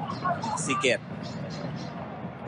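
A football commentator briefly calls a player's name over steady stadium crowd and pitch ambience.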